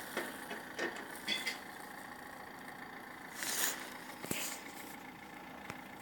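Faint background with a few brief soft rustles, one a little louder about three and a half seconds in, and two small clicks later on.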